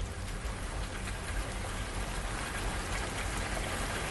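Steady rain falling, with no music over it: the rain ambience of the song's soundtrack.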